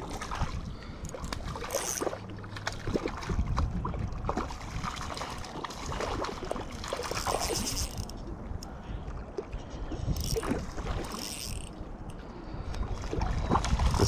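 Water splashing and sloshing at the shoreline as a small trout thrashes at the surface, in irregular bursts about 2 seconds in, around 7 to 8 seconds and again around 10 to 11 seconds. Scattered knocks and rustles of handling run underneath.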